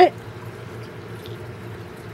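A spoken word at the start, then a steady low background hum with faint hiss.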